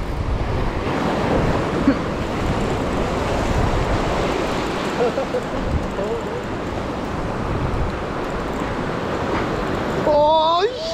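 Ocean surf washing over a rock ledge, a steady rushing wash, with wind buffeting the microphone.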